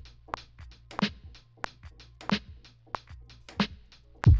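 Programmed boom bap drum pattern: a crisp snare about every 1.3 seconds, with lighter hi-hat and percussion hits between, and no heavy kick drum.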